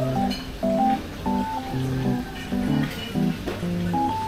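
Background music: a plucked guitar melody over a bass line, moving in short, evenly timed notes.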